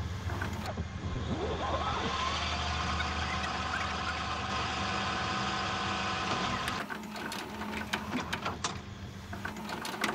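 Videocassette recorder rewinding a VHS tape: a steady mechanical whir that stops at about seven seconds, followed by a few scattered clicks.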